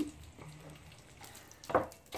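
Faint, steady sizzle of meatballs frying in an electric frying pan, with light clicks of a plastic spatula as a meatball is set down on a plate of rice. There is a short, louder sound near the end.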